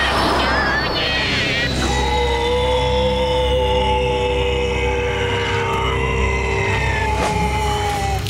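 Cartoon sound effects and score: a whooshing rush in the first two seconds, then a long held chord of several steady tones sounding together for about six seconds.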